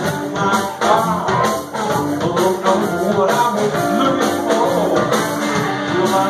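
Live rock band playing loud and steadily: electric guitars, bass guitar and drum kit, with a harmonica played into a vocal microphone.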